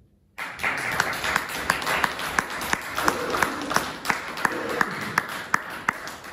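Audience applause breaking out suddenly out of silence about half a second in, with one loud clapper close to the microphone beating out about three claps a second.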